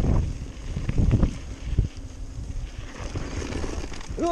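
Wind rushing on the microphone over the rumble of mountain-bike tyres on a dirt singletrack, with louder jolts and rattles near the start and about a second in, then steadier and quieter riding.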